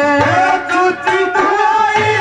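Haryanvi ragni folk music: a melodic instrumental line over hand-drum beats.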